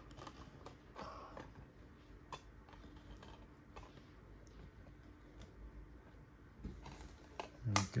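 Faint, scattered clicks and light scrapes of cardboard trading cards and clear plastic card stands being shifted and set down on a table.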